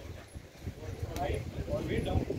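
Indistinct, far-off voices over a low rumble of outdoor noise, with one sharp click about a second in.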